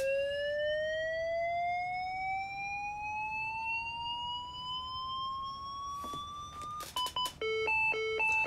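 Manual defibrillator charging: its whine rises steadily in pitch for about seven seconds. It stops with a few clicks near the end and gives way to repeated beeps, about two a second, signalling that it is charged and ready to shock.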